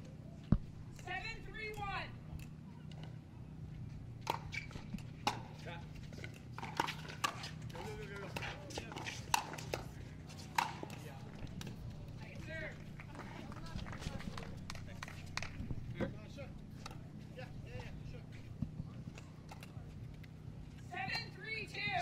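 Pickleball paddles striking a plastic pickleball during a rally: sharp pops at irregular intervals, one loud pop about half a second in.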